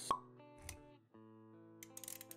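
Intro-animation sound design: a sharp pop with a short ringing tone right at the start, a low thud about two-thirds of a second in, then, after a brief gap, music with sustained notes and a few light clicks near the end.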